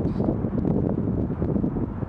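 Wind buffeting the microphone: a steady low rumble, with a few faint clicks.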